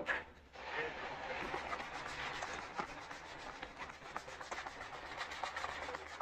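A polishing cloth rubbing steadily over a leather boot, with faint small ticks, buffing a fresh coat of wax polish toward a mirror shine. It starts about half a second in.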